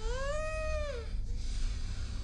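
A high, whining cry about a second long that rises and then falls in pitch, coming right after a shorter one. A breathy hiss follows over a steady low rumble.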